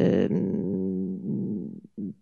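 A woman's drawn-out hesitation sound into a microphone. It sinks into a low, creaky rasp and fades out about a second and a half in, with a short voice onset near the end.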